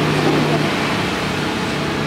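Loud, steady mechanical background noise with a low hum, like a motor running or traffic passing, and no words over it.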